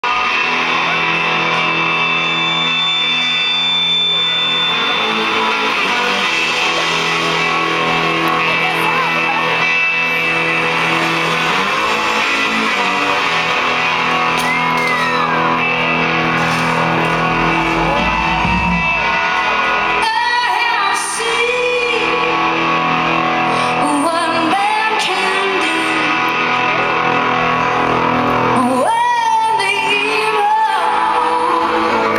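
Live rock band with electric guitars holding sustained, ringing chords and notes. Wordless voices sliding up and down in pitch join in over the last ten seconds.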